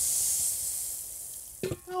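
Hand-held fire extinguisher spraying onto a small fire, a loud steady hiss that fades away about one and a half seconds in as the fire is put out.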